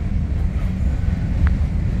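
Wind buffeting the microphone outdoors, a steady low rumble, with one faint click about one and a half seconds in.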